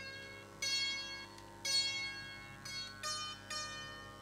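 Sitar plucked one note at a time, each note ringing out and fading before the next, about one every half second to a second, over a steady low drone.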